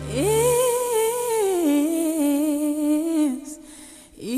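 A high solo voice hums a wordless phrase with vibrato: it slides up into a long held note, steps down to a lower held note and fades out a little after three seconds in. The low backing drops away about half a second in.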